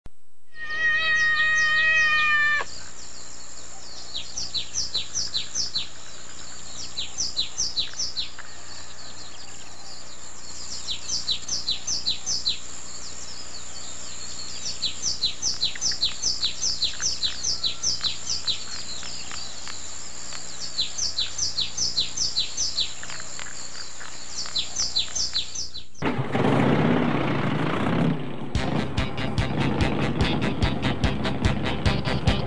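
Birds chirping in repeated runs of quick, falling chirps over a faint steady drone, after a short held tone at the very start. About four seconds before the end there is a brief loud rushing noise, then music with a steady beat starts.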